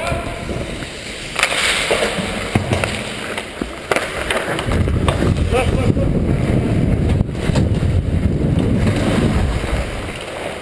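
Ice hockey skates scraping and cutting on the ice, with a few sharp stick clicks, heard from a camera worn by the skater. From about halfway a low rumble of wind on the microphone takes over as he skates hard up the ice.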